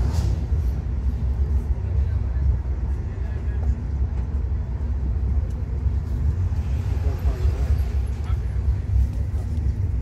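Steady low rumble of a vehicle in motion, heard from inside the passenger cabin.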